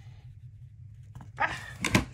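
A dog barking twice in quick succession near the end, the second bark louder.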